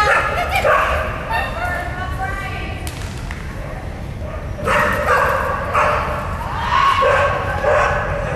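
A dog barking and yipping in several bouts while running an agility course, over a steady low hum of a large hall.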